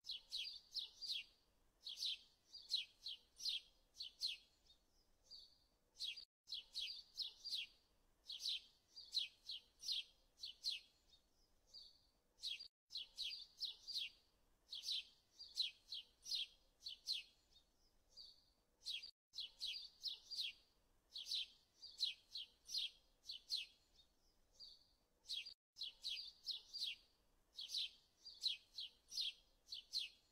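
Quiet birdsong: quick high chirps in a phrase a few seconds long, followed by a short pause, repeating identically about every six and a half seconds with a brief cutout at each repeat, as a looped recording does.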